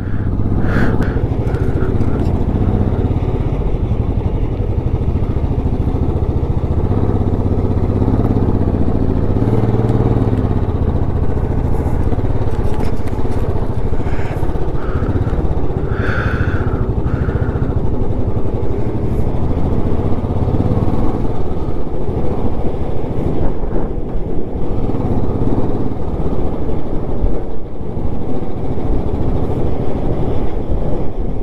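Motorcycle engine running steadily while riding at road speed, heard close up from the bike.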